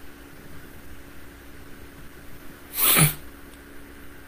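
A man gives one short, sharp burst of breath about three seconds in, over faint steady room hum.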